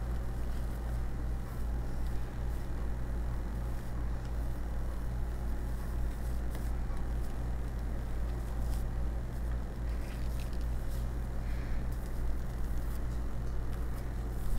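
A steady low hum, with faint soft scrapes and taps of a silicone spatula spreading meringue over a casserole in a ceramic dish.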